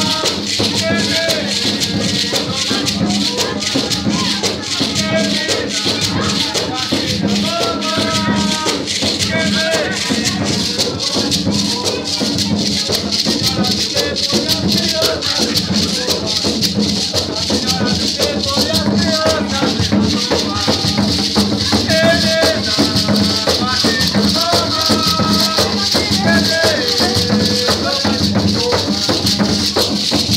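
Live religious percussion music: a steady drum beat under fast, continuous shaking of rattles, with people singing over it.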